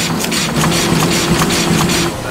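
Printing press running: a fast, even clatter of several strokes a second over a steady hum.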